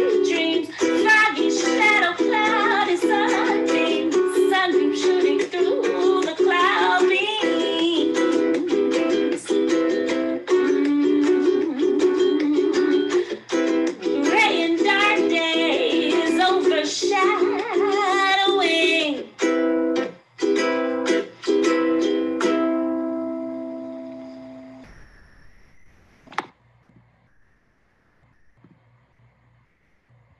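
A recorded song with a woman singing over instrumental accompaniment. The singing stops about nineteen seconds in; a few last chords ring and fade out, and near the end there is near silence with a single click.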